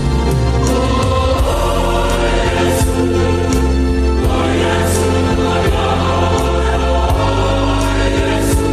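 A choir singing a hymn over instrumental accompaniment, with a strong bass line and a steady beat.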